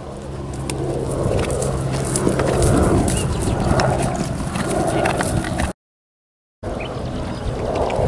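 A horse cantering over grass, its hoofbeats and breaths growing louder as it comes close to jump a log. The sound cuts out for about a second near the end.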